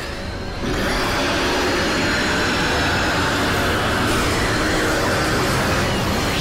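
Sound effect for a man's transformation into a monster: a loud, steady rushing noise that swells about half a second in and holds.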